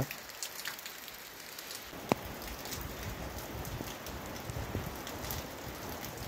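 Heavy, continuous rain falling: a steady even hiss full of fine drop ticks, with one sharper tap about two seconds in.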